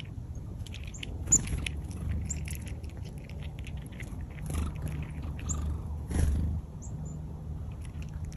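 Chipmunk cracking and chewing black sunflower seeds from a hand: a rapid run of small crisp crunches with a sharper crack about a second in, over a low rumble.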